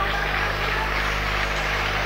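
Steady background noise: an even hiss over a constant low hum, with no single event standing out.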